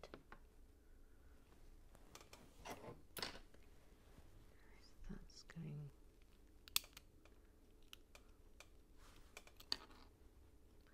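LEGO bricks being handled and pressed together: scattered small plastic clicks and rustles, with the sharpest click about seven seconds in and another near the end.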